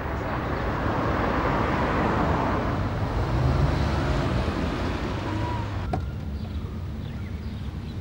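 Road traffic noise: a vehicle's rumble swells over the first few seconds and then fades, with a single sharp click about six seconds in.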